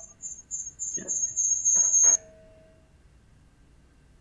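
High-pitched audio feedback whine on a video-conference call, pulsing at first and then held steady, with brief fragments of a voice; it cuts off suddenly a little over two seconds in. Such feedback is typical of several unmuted participants' microphones and speakers in the same room.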